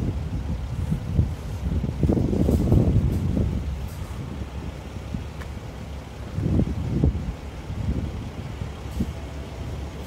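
Gusty wind buffeting the microphone, swelling and easing in irregular gusts.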